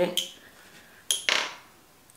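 Kitchen knife slicing speck on a plastic cutting board. The blade clicks sharply on the board about a second in, then makes one short scraping stroke.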